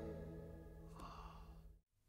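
A person's short, breathy sigh about a second in, over faint sustained tones that are dying away; the sound cuts off suddenly shortly before the end.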